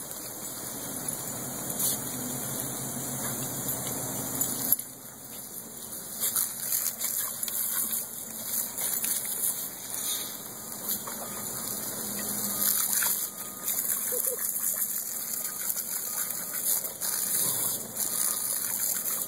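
Water spraying from a garden hose onto grass and wet ground, a steady hiss that drops sharply about five seconds in and then goes on as uneven splashing.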